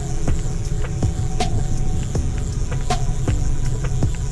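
The outrigger boat's engine running as a steady low rumble, with light clicks about every one and a half seconds.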